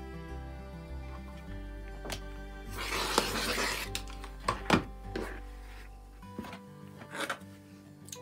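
A rotary cutter slicing through layered cotton fabric along a ruler on a cutting mat: one rasping stroke a little under three seconds in, lasting about a second, followed by a few light clicks. Background music with steady tones plays throughout.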